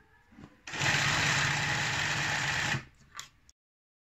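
Sewing machine running in one steady burst of about two seconds as it stitches a yellow binding strip onto printed fabric, then a short second burst before the sound cuts off.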